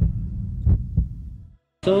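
Sound-effect heartbeat: low thumps in pairs, lub-dub, about a second apart, over a low hum. It cuts off shortly before the end, and a man's voice begins.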